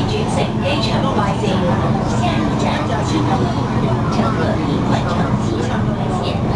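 Steady running rumble of an MTR Tung Chung Line K-Train heard from inside the carriage, with voices talking over it throughout.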